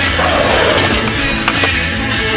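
Rock music track with skateboard wheels rolling on concrete, and two sharp board clacks about a second and a half in.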